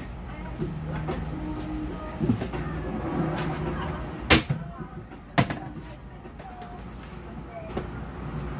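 Background music playing, with two sharp knocks of kitchen items being handled on the counter about four and five and a half seconds in, the knocks the loudest sounds.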